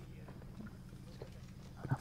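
Quiet pause: a faint steady low hum with a few soft clicks.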